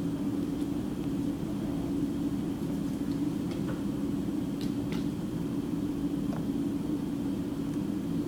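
A steady low machine hum, like room equipment or ventilation running, with a few faint light taps near the middle as a plastic drafting triangle is moved about on paper.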